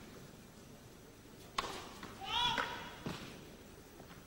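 A tennis serve struck with a sharp crack, followed about half a second later by a short shouted call that rises and falls in pitch, then a dull thud of the ball about a second after the hit, all with the echo of an indoor arena.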